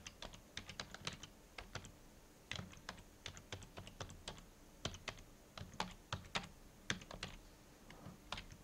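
Computer keyboard keys clicking as a web address is typed, in quick irregular runs of keystrokes with a short pause about two seconds in.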